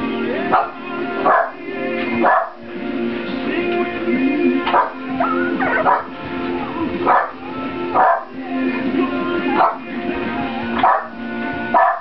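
Background music with held notes, over which seven-week-old Lhasa Apso puppies give short high yips and barks as they play-fight, about one a second.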